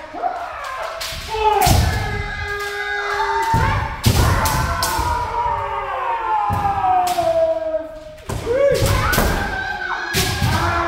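Kendo sparring: several practitioners shout long, drawn-out kiai that overlap and slowly fall in pitch. Sharp cracks of bamboo shinai strikes and thuds of stamping footwork on the wooden floor come every second or so.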